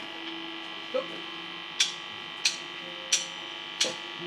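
Amplifier hum and buzz from the band's rig, with several steady tones held throughout. Over it come four evenly spaced sharp clicks about two-thirds of a second apart, the drummer's count-in just before the song starts.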